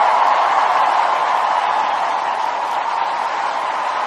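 Large audience applauding and cheering as a song ends, a dense steady roar of clapping that slowly fades.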